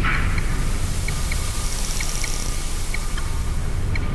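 Electronic dance track in a breakdown with the beat dropped out: a steady hissing wash with small high blips scattered through it and a faint held tone. Near the middle comes a brief fast twitter.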